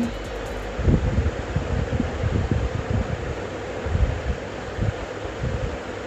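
Wind buffeting the phone's microphone in uneven gusts, over a steady outdoor noise.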